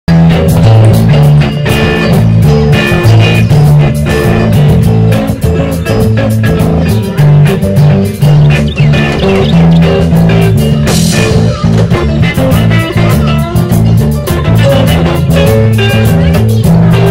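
Rock-style music with guitar, bass and drums, playing loudly with a steady beat.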